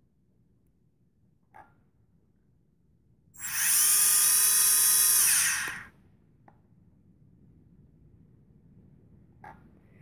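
OnagoFly quadcopter's four bare motors, with no propellers fitted, spinning up as they are armed from the transmitter: a steady high whine that starts about three and a half seconds in, lasts about two and a half seconds and then stops. A few faint clicks come before and after it.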